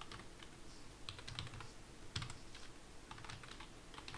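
Faint typing on a computer keyboard: quick, irregular key taps in short runs.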